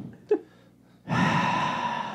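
A sound effect cue starts about a second in: a sustained sound of several steady tones over a hiss, the signal that a recurring segment is starting.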